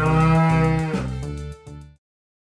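Bull mooing once, a long call lasting about a second that rises slightly in pitch and then falls, over light background music that stops abruptly just before the end.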